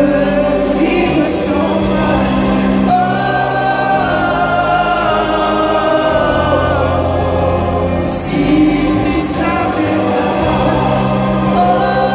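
A large choir singing with a string orchestra in a live performance, holding long sustained chords over a steady bass line.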